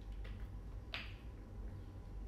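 A plastic water bottle being handled and opened to drink from: one sharp plastic click about a second in, over a low steady hum.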